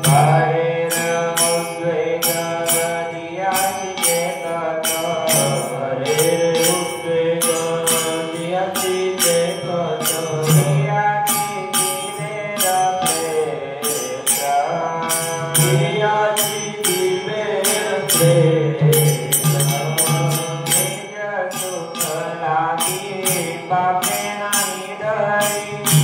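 Devotional mantra chanting sung as a melody, accompanied by a steady percussion beat about twice a second and a held low tone underneath.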